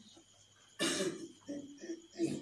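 A person coughs once, loudly, a little under a second in, followed by two shorter throat-clearing sounds.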